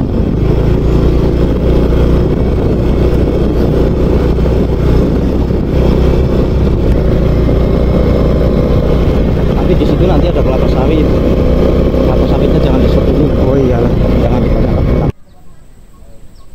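Motorcycle engine running steadily while riding along a dirt road. It cuts off suddenly about fifteen seconds in, leaving quiet outdoor background.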